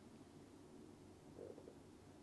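Near silence, broken by one short, faint stomach gurgle about one and a half seconds in.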